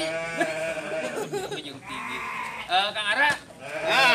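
Garut sheep bleating several times: a long wavering call at the start, another about three-quarters of the way through, and one more at the end.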